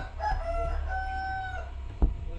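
A rooster crowing: a few short rising notes, then one long held note that falls away.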